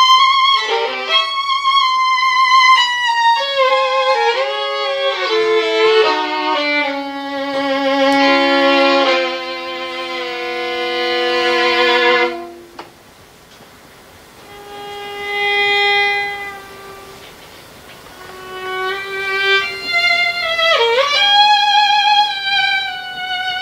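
Solo violin playing a slow ballad: a high note held with vibrato, then a falling line into long held notes that break off about halfway through. After a brief hush a soft note swells and fades, and the melody climbs back to a high note with vibrato, with a quick slide down and up just before it.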